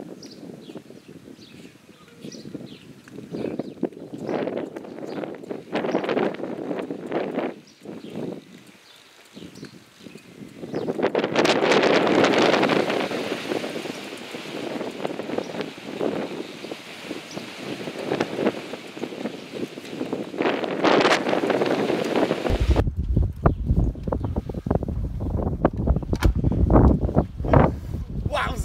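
Gusty breeze buffeting the microphone, rising and falling, with the strongest gust about eleven seconds in. From about two-thirds of the way through, the wind turns into a heavy low rumble on the mic.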